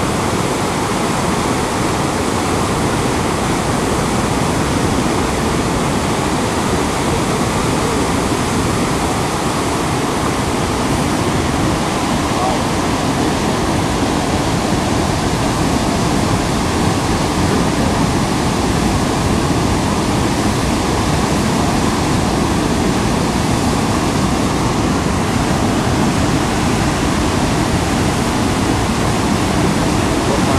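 Niagara Falls at close range: a loud, steady rush of falling and churning water with no let-up.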